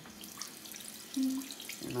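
Bathroom sink faucet running, the stream splashing over a small trumpet cleaning brush being rinsed under it.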